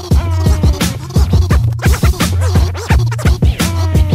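Hip-hop instrumental with turntable scratching: a record scratched back and forth so its sound sweeps quickly up and down in pitch, over a beat with a deep steady bass and sharp drum hits.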